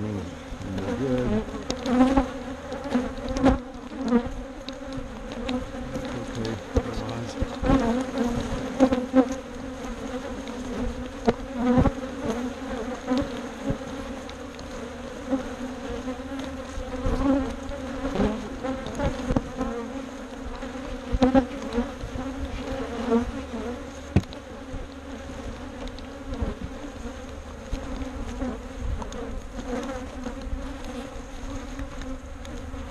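Honey bees buzzing around open hives: a steady hum that swells and fades as bees fly close. Scattered short knocks are heard throughout.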